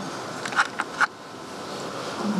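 Three short sharp clicks about half a second to a second in, over a steady low hush of room noise.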